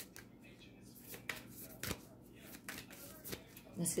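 Oracle cards being shuffled and handled by hand: a run of faint, irregular soft clicks and rustles.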